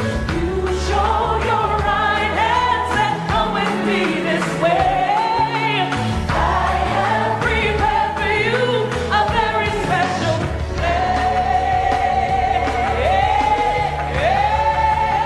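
Gospel song with a female lead vocal and backing singers over a band with a steady bass line.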